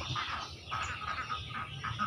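Outdoor background of small animal calls: a steady high-pitched trill with scattered short chirps.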